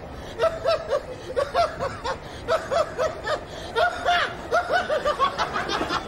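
A man laughing in runs of short, quick 'ha' pulses, several a second, with brief pauses between the runs.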